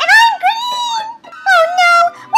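A high, cartoonish voice wailing in two drawn-out cries, the second starting about halfway through.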